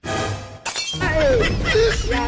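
A pitched musical hit, then a glass-shattering sound effect a little over half a second in, followed by swooping tones that rise and fall.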